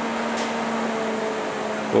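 Steady fan-like whirring with a low, even hum underneath.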